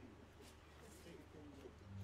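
Near silence: room tone with a faint, low murmuring voice over a steady low hum.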